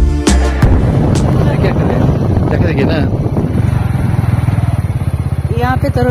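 Motorcycle engine running at a steady pace while riding, heard from on the bike. Beat-driven music cuts off about half a second in.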